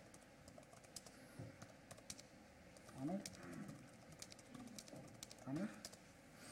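Typing on a laptop keyboard: faint, irregular key clicks.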